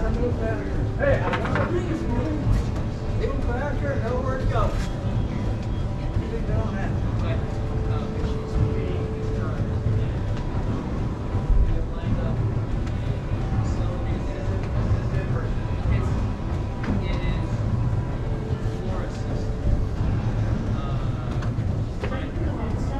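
Indistinct voices, most noticeable in the first few seconds, over a steady low rumble of background noise.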